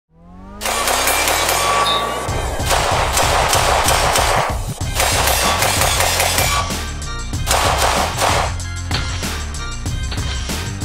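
Intro music that opens with a rising sweep, then a steady pounding beat, with gunfire from a CMMG Mk57 Banshee 5.7x28 AR-style pistol cut in among it.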